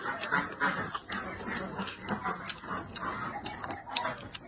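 Close-miked chewing of crunchy shredded fish mint (houttuynia) root, with crisp crunching clicks at about four a second.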